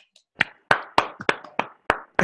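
Hand clapping heard through a video call, sharp separate claps at about three a second starting about half a second in.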